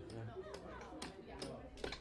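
Low murmur of voices around a gaming table, with a man's voice trailing off at the start and a couple of light clicks near the end.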